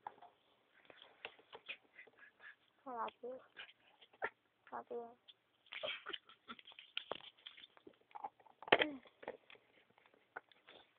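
Small plastic Littlest Pet Shop figures clicking and tapping as they are handled and moved on a surface, with a few brief pitched vocal noises from the voice actor, the loudest just before the end.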